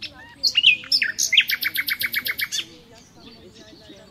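A songbird sings one loud phrase starting about half a second in: a few varied high notes, then a fast, even run of repeated notes, about eight a second, ending near the middle. Fainter bird calls sound in the background.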